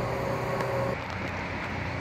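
Steady machine hum with a few held tones, like an engine or motor running; about halfway through, the tones drop away and a quieter hum is left.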